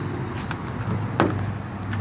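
A steady low hum, with one sharp click a little past halfway.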